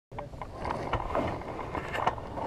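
Wind on the microphone of a camera mounted on a hang glider, with scattered small knocks and rattles from the glider's frame and rigging as it is handled.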